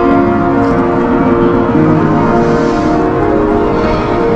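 Upright piano playing slow chords, the notes held long and overlapping as one chord moves into the next.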